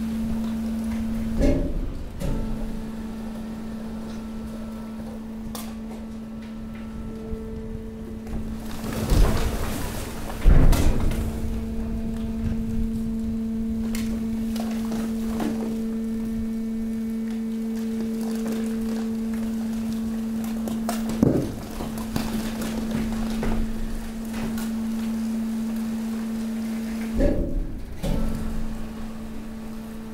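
Hydraulic waste compactor press running with a steady low hum, while its ram pushes mixed waste and cardboard into the container. There are several heavy thumps and crunches, the loudest about ten seconds in.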